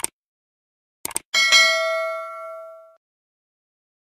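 Subscribe-button sound effect: short mouse clicks, a quick double click about a second in, then a notification bell ding that rings out and fades over about a second and a half.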